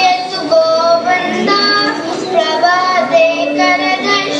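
A child's voice singing a devotional melody in held notes that bend gently between pitches.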